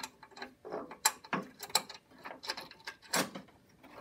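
Irregular small metallic clicks and scrapes as the end of a mower's clutch/brake cable is worked by hand back into the slotted hole of its steel bracket, with a sharper click about three seconds in.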